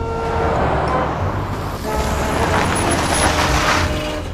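Cartoon sound effect of a mail truck driving: a low engine rumble with road noise that builds up through the second half.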